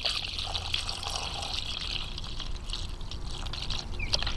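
Fertilizer-mixed water pouring in a steady stream from a watering can's spout into the fill hole of a self-watering pot's reservoir, splashing into the water already inside.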